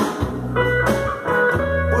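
Guitar playing a short instrumental fill of a few plucked single notes, each ringing and fading, in a gap between sung lines.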